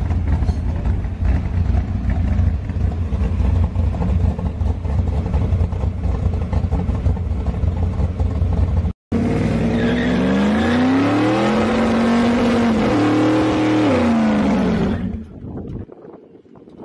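A pickup truck's engine runs with a loud, rough low rumble. After a short break about nine seconds in, it revs up and down a couple of times, then fades out near the end.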